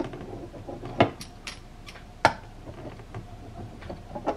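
Quiet handling of a fabric strip and sewing tools on a sewing machine's bed, with two sharp taps about a second and two seconds in.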